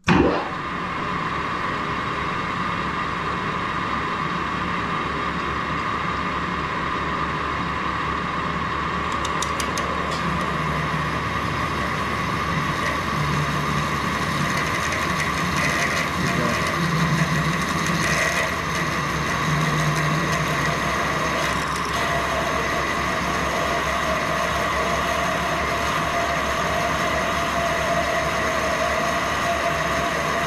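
Metal lathe switched on and running steadily with a constant whine, a freshly sharpened twist drill in the tailstock chuck cutting into a spinning steel bar. The drill is cutting evenly, taking equal turnings off both sides.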